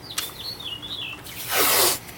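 Blue painter's masking tape being pulled off its roll: a loud, short rip about one and a half seconds in, with lighter handling noises of tape and masking paper before it.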